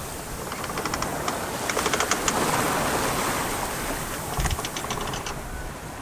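Water rushing and splashing along the hull of a Hunter Passage 42 sailboat under way in choppy sea, heard as a steady wash. Three short runs of rapid clicking come through, about one second, two seconds and four and a half seconds in.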